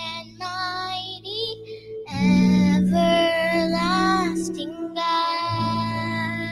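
A young girl singing solo with long held notes over steady instrumental accompaniment; her singing grows louder about two seconds in.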